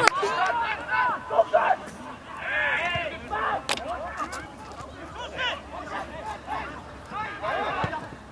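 Several voices shouting and calling out across a football pitch, words not clear, with a sharp knock a little before four seconds in.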